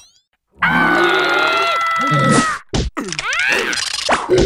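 Cartoon character vocalizations and sound effects. After a brief silence comes a long, high held note that sinks slightly in pitch, then short grunts and gliding exclamations near the end.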